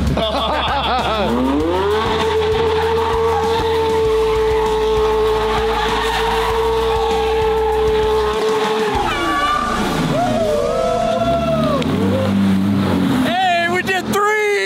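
Porsche 911 flat-six engine revved up and held at high revs for about six seconds while the rear tyres spin and squeal in a smoky donut. The revs then drop away, followed by a few shorter blips near the end.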